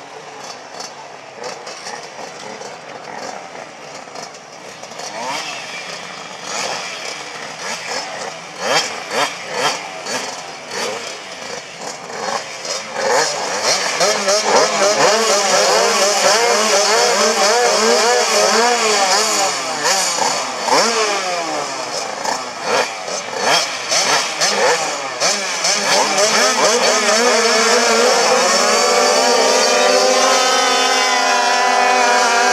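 Several speedway motorcycle engines revving at the start gate, their pitches rising and falling out of step. Quieter at first, they get louder about halfway through, and near the end they rise together as the bikes pull away at the start.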